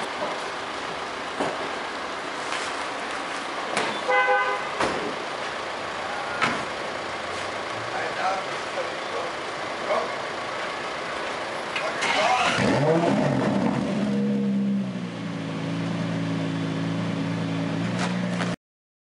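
Aston Martin One-77's V12 engine starting about twelve seconds in: the revs flare up, then settle into a steady idle that drops a little and holds. Before that there is background noise with a short horn-like toot about four seconds in.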